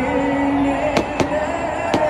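Fireworks going off over a stadium: three sharp bangs, two a fifth of a second apart about a second in and one near the end. They cut through a singer's voice heard over the stadium PA, holding a note at the start.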